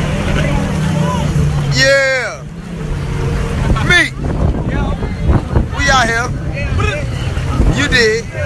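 Jet ski engines running with a steady low hum, with voices calling out briefly about two, four and six seconds in.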